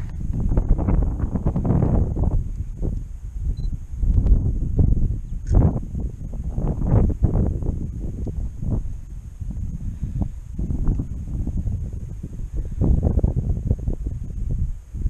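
Wind buffeting the camera's microphone: a low, rumbling noise that rises and falls in uneven gusts.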